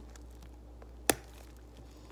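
A single sharp click, about a second in, from handling a soft plastic ring binder with a snap-button closure, over a low steady hum.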